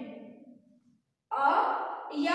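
Speech only: a voice trails off, a moment of silence about a second in, then speaking starts again.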